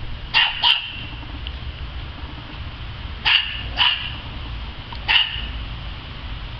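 Small dog barking in short, high-pitched barks: two quick barks right at the start, two more about three seconds in, and a single bark about five seconds in.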